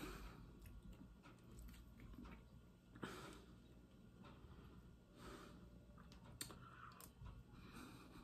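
Near silence: faint mouth sounds of eating ice cream, with a few faint clicks of a metal spoon against the paper tub.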